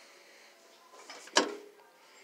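A single sharp metal clank about one and a half seconds in, with a brief ring, preceded by light handling noise: a decorative tin box being picked up and knocking against the shelf.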